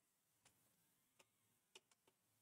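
Near silence: room tone with a few faint, short clicks, about half a second in and twice close together near the end.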